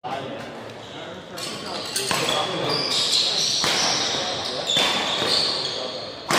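Badminton doubles rally: rackets striking the shuttlecock with sharp cracks roughly every second or so, with short high squeaks of shoes on the court floor, echoing in a large hall.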